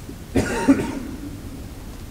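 A person coughing once, about a third of a second in, with a short voiced tail.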